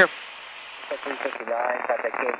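A voice heard through the aircraft's headset audio, thin and narrow-sounding, starting about a second in after a moment of low hiss.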